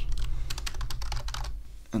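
Typing on a computer keyboard: a quick, uneven run of keystroke clicks, several a second, over a low steady hum.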